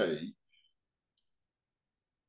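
A man's voice finishing a word, then near silence with two faint ticks in the pause.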